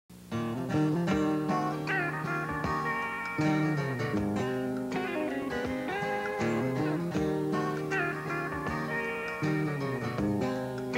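Instrumental introduction to a southern gospel song played by a country-style band: guitars with notes that slide up in pitch, over bass and drums.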